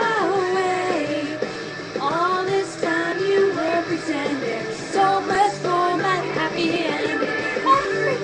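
A girl singing along to a pop-rock song, her voice over the backing track.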